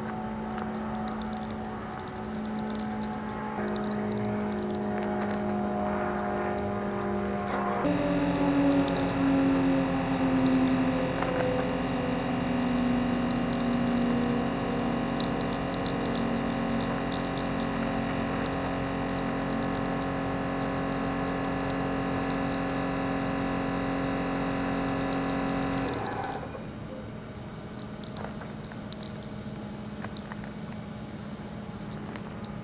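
Spray paint hissing from an aerosol can, over a steady engine hum whose pitch sinks slowly and which cuts off suddenly a few seconds before the end.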